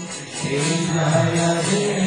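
Devotional kirtan: voices chanting a mantra in song over a sustained low drone, with jingling hand percussion. The singing breaks off briefly at the start and resumes about half a second in.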